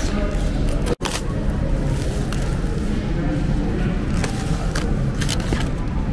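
Plastic cling film crinkling as it is peeled off a takeout food tray, over steady room noise; the sound cuts out for an instant about a second in.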